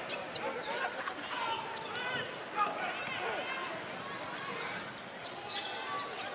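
Basketball bouncing on a hardwood court during live play, heard as scattered short knocks, with indistinct voices in the gym behind.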